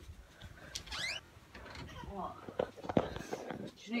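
Quiet indoor sounds: faint voices, a brief rising squeal about a second in, and a single sharp click near three seconds.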